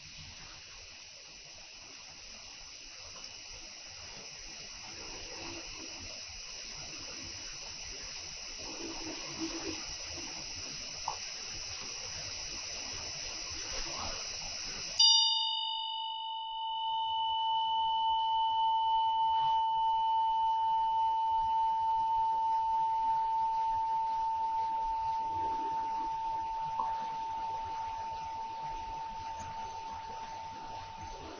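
A Tibetan ritual hand bell (drilbu) ringing in long sustained tones. A high, steady ring fills the first half; about halfway a sudden strike brings in a lower, steady ring that swells and then slowly fades toward the end.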